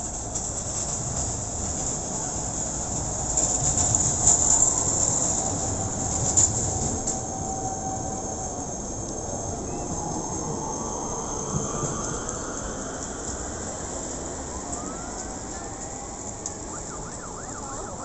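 Busy city street traffic noise, with a whine that holds one pitch for several seconds and then rises slowly.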